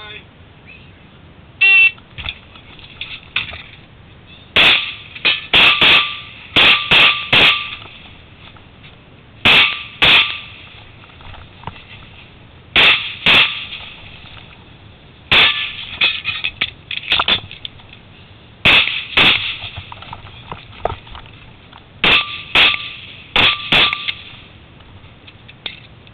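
A shot timer beeps, then a Glock 34 9mm pistol fires about twenty shots in quick pairs and short strings, with pauses of one to three seconds between strings.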